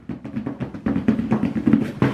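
A drumroll: a fast, uneven run of short drum-like taps.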